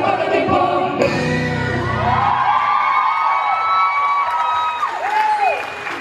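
Live music with singing: a vocalist holds long notes over a traditional Malaysian orchestra, ending with a falling slide in pitch near the end.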